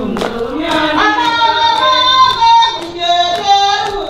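A group of women singing a song together, with sharp hand claps keeping a steady beat of about two a second.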